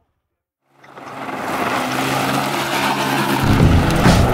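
Car driving fast on a gravel road, the engine running steadily under a hiss of tyres on loose gravel. It starts after a short silence and grows louder over about a second. A heavy bass beat of music comes in near the end.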